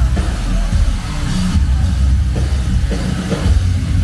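A post-hardcore band playing live and loud, with a heavy drum kit and bass dominating, heard from the crowd.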